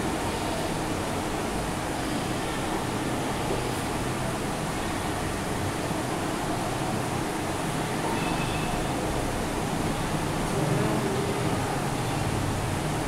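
Steady background noise, an even hiss with no clear tone or rhythm.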